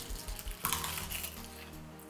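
Soft background music, with one short crisp crunch about two-thirds of a second in as a bite is taken from a laver-wrapped rice piece.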